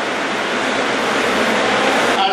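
Audience applauding steadily, a dense clatter of many hands clapping.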